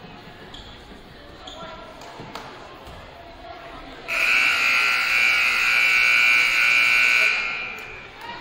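Gymnasium scoreboard horn sounding one long steady blast of about three seconds, starting about halfway through, signalling the end of a timeout.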